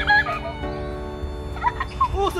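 Background music with steady held notes, with short calls that bend up and down in pitch at the start and again near the end.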